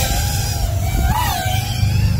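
FPV quadcopter's brushless motors (DYS Sun-Fun 2306-1750kV on a 6S pack) whining in flight, the pitch dipping and rising with the throttle, with a quick rise and fall about a second in. A steady low rumble runs underneath.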